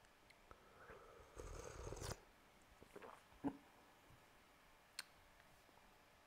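A short sip of tea from a ceramic tea bowl, then a single knock, the loudest sound, as the bowl is set down on the wooden table about three and a half seconds in, and a faint click near the end, against near silence.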